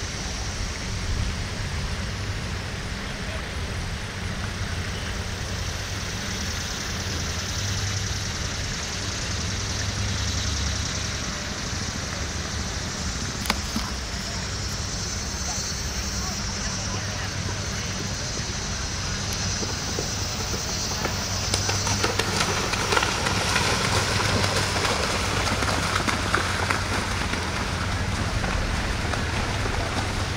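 Outdoor background noise with faint, indistinct voices and a steady low rumble; it grows louder about twenty seconds in, with a few short sharp knocks.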